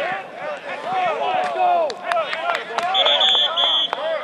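Football players shouting and yelling during a full-contact practice play, with sharp knocks of pads and helmets colliding. Near the end a whistle blows in a few quick pulses, signalling the play dead as the ball carrier is brought down.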